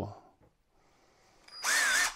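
Hilti SIW 22T-A cordless impact wrench triggered briefly about a second and a half in, its motor whirring up and spinning free for under a second with no hammering.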